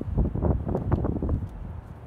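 Wind buffeting the microphone: low, uneven rumbling gusts that come and go through the first second and a half.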